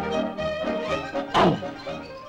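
Orchestral cartoon score playing, with a loud, sudden thunk and a quick downward-sliding sound effect about one and a half seconds in.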